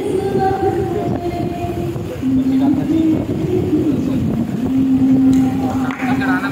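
A woman singing into a microphone over a hall PA system, holding long slow notes that step lower in pitch about two seconds in and again past the middle.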